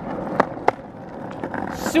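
Skateboard rolling along a rough asphalt street: a steady rumble from the wheels, broken by two sharp clicks in the first second.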